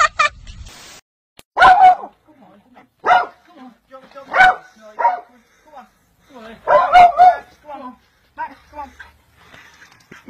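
A dog barking in short bursts, about six over several seconds, spaced roughly a second apart, with the loudest cluster about seven seconds in.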